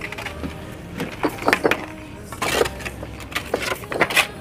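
Steel bricklaying trowel knocking and scraping on concrete bricks and mortar while a brick pier is laid: a handful of short, sharp knocks and scrapes.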